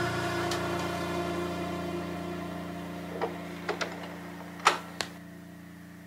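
Audio-Technica automatic turntable's tonearm mechanism clicking as it swings over and sets the stylus down on a spinning vinyl record: a few light clicks about halfway in, then a sharper click and a softer one as the stylus lands. A steady hum fades away underneath.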